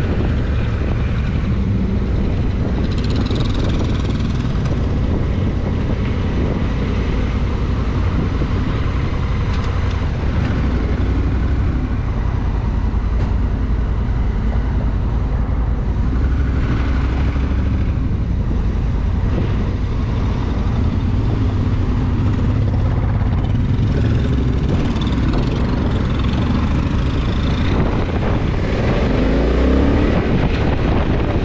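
Motorcycle riding at town speed: the engine runs under steady road and wind noise on the bike-mounted microphone. Near the end the engine note rises as it accelerates.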